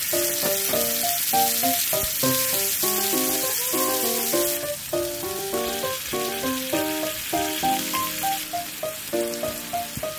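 Kimchi and tofu sizzling in hot oil in a rectangular frying pan as they are stir-fried. The sizzle drops a little about halfway through, when tuna is in the pan, with soft background piano music throughout.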